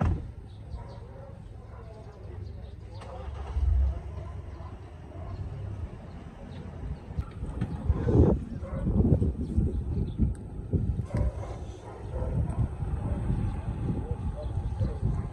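Outdoor ambience with indistinct voices of people standing around, over a low uneven rumble that grows louder and choppier from about eight seconds in.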